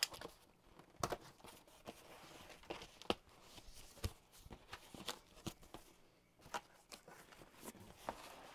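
Cardboard shipping box being opened with the back of a knife blade: irregular, scattered sharp snaps and scrapes as the packing tape gives and the stiff flaps are pulled back.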